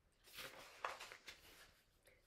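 A paperback picture-book page being turned by hand: a faint paper rustle with a sharper crackle a little under a second in.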